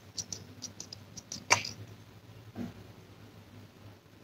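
Quiet handling of a perfume spray bottle while the fragrance is put on the skin: a run of faint clicks and taps, then one sharper click about a second and a half in.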